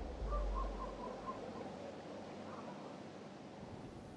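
An owl hooting in a short wavering call about half a second in, over faint night ambience, as a low rumble fades out at the start.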